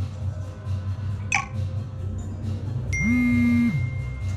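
A phone notification alert as a message arrives: about three seconds in, a loud buzz lasting under a second, with a thin high tone that holds on after it. Earlier, about a second in, a quick falling swish. Background music pulses low underneath.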